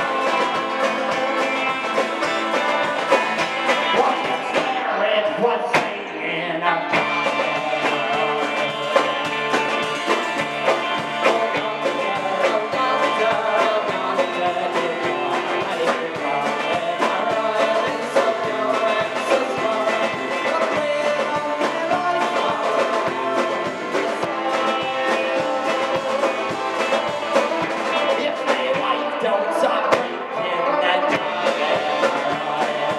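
Live bar-band rock music: acoustic and electric guitars over a steady drum beat, with a man singing lead.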